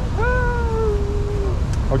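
A person's voice holding one long, drawn-out high vowel for over a second, its pitch falling slightly, over a steady low street rumble.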